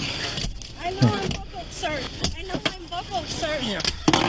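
Voices from the dashcam footage, with a few sharp knocks as officers strike the SUV's driver-side window to break it.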